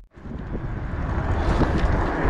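Strong wind buffeting the microphone of a camera on a moving fat bike, a rushing noise that sets in abruptly and grows louder.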